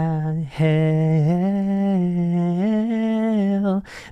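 A man singing a cappella in long held notes, stepping upward in pitch twice before stopping near the end: a vocal demonstration of a song's closing line as it swings up to the final note.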